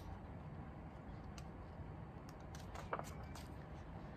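Quiet room tone with faint handling of a picture book as a page is turned, and a small click about three seconds in.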